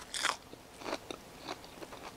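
A person chewing a leaf of New Red Fire red leaf lettuce: crisp, crunchy bites, the loudest about a quarter second in, then several softer crunches.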